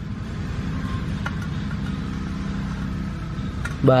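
A steady low mechanical drone, like a motor or engine running evenly, with a couple of faint ticks; a man's voice starts right at the end.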